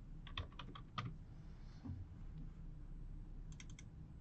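Computer keyboard typing, faint: a quick run of keystrokes in the first second, then a pause, then a short burst of four clicks near the end.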